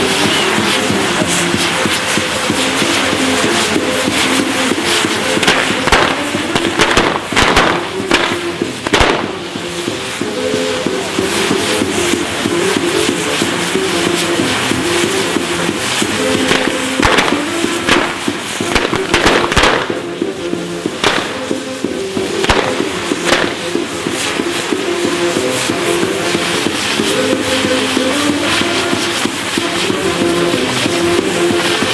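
A burning fireworks castle tower with its wheels alight: a steady crackle with sharp firecracker bangs, heaviest about a quarter and about two-thirds of the way through. Music with held, stepping notes plays throughout.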